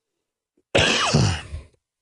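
A man clearing his throat once, about three-quarters of a second in, a rasp lasting about a second as his voice slides down in pitch.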